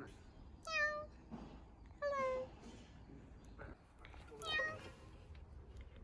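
A domestic cat meowing three times, each meow falling in pitch.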